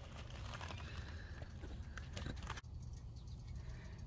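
Handling noise from a phone being set down at ground level: faint scrapes and small knocks against the microphone, which quieten about two-thirds of the way in as it settles.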